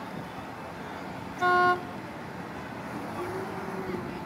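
A single short horn toot, lasting about a third of a second and coming about one and a half seconds in, over steady outdoor background noise with faint distant voices.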